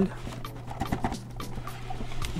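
Stiff cardboard box being turned over in the hands: light rubbing and small taps, over quiet background music.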